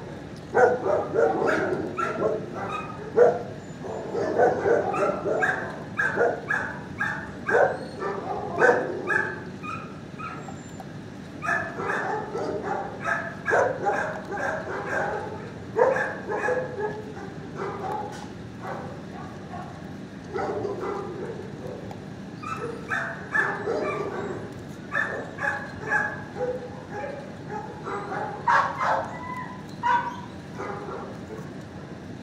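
Dogs barking in a shelter kennel block: overlapping runs of short barks and yips, with a couple of brief lulls.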